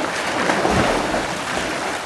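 Pool water splashing and sloshing as swimmers move about in it.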